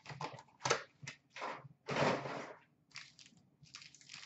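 Hockey-card pack wrapper crinkling and tearing open, with the cards inside being handled: a string of short, irregular rustles, the longest about two seconds in.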